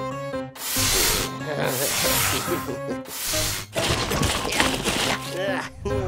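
Cartoon background music with several short hissing whooshes, sound effects laid over it.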